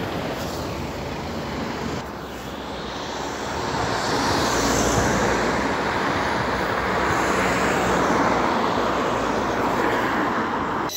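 Road traffic passing close by: a steady rush of car engines and tyre noise that swells about four seconds in and then holds.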